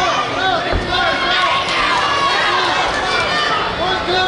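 Crowd of fight spectators shouting over one another, many voices calling out at once, with a short low thud about three quarters of a second in.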